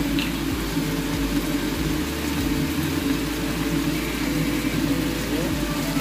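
Shell-on prawns sizzling in a frying pan over a gas flame, over a steady low hum.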